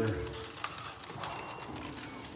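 Footsteps and small clicks on a hard floor, at the tail end of a man's voice, with a faint thin high tone about halfway through.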